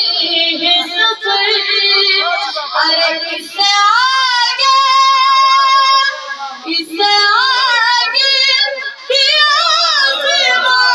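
A boy singing a manqabat, a devotional praise poem, solo into a microphone with no instruments. He draws out long ornamented held notes, the longest from about four to six seconds in.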